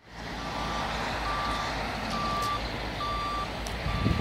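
A vehicle's reversing alarm beeping evenly, about one short high beep a second, five beeps in all, over a steady low rumble.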